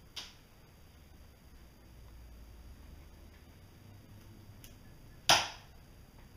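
Two short snips from a pair of red-handled cutting pliers trimming waxed nylon floss: a faint one just after the start and a much louder, sharper one about five seconds in.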